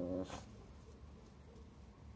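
A Lhasa Apso dog makes a short, low vocal sound right at the start, followed by a brief breathy puff. After that there is only faint background.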